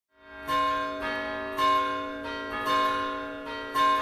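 Church bells pealing, a new strike about every half second, alternating louder and softer, each ringing on under the next.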